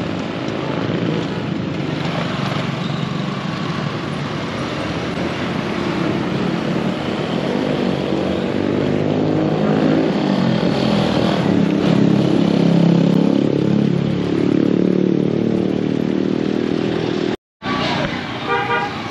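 Motorcycles passing on a road, their small engines rising and falling in pitch as they go by, growing louder in the second half. The sound drops out briefly near the end.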